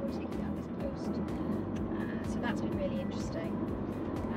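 Steady road and engine noise inside a moving car's cabin, with a few faint murmured voice sounds.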